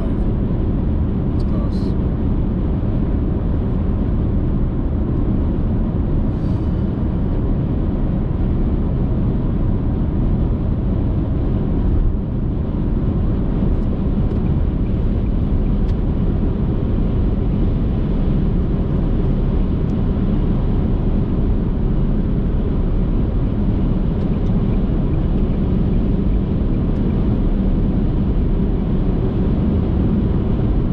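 Steady road and engine noise inside a car cruising on an interstate highway: an even low rumble that keeps the same level throughout.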